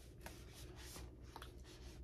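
Near silence: a low steady room hum with faint soft rubbing as cakes of yarn are handled.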